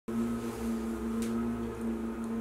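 A constant, steady hum: several fixed pitches held without change.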